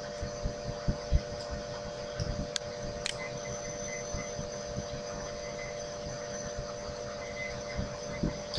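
Steady electrical hum with a few fixed tones, the background noise of a voice-over microphone setup, with scattered soft low bumps and two faint clicks about two and a half and three seconds in.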